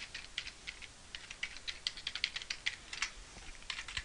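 Typing on a computer keyboard: a quick, irregular run of light key clicks.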